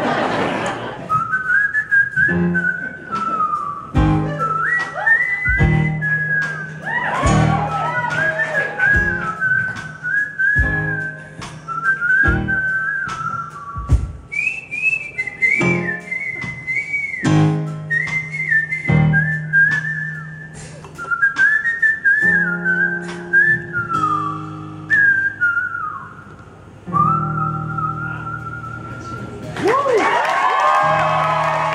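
A man whistling a melody solo, a single clear high tune in short phrases, over piano chords and a steady bass line.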